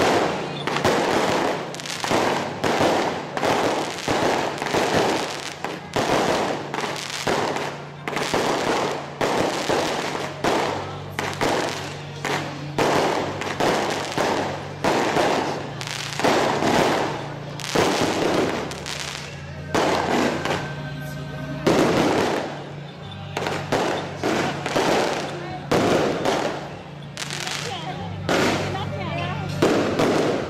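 Firecrackers going off in repeated sharp bursts, roughly one or two a second, over a steady low hum.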